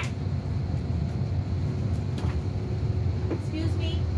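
Steady low rumble of an airliner's cabin air-conditioning and ventilation, with a faint constant hum above it.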